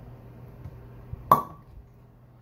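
Cork pulled from a wine bottle with a waiter's corkscrew, coming free with a single sharp pop a little over a second in, followed by a brief ring. A faint steady low hum sits underneath.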